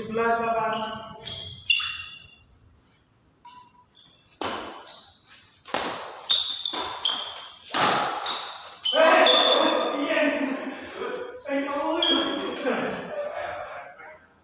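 Badminton rackets striking a shuttlecock several times in quick succession during a rally, the sharp hits echoing in a large hall. Players' voices call out at the start and again over the last few seconds.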